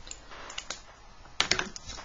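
A pencil being picked up off the drawing sheet and drawing instruments handled on the board. There are a couple of light taps about half a second in, then a quick cluster of clicks and taps in the second half.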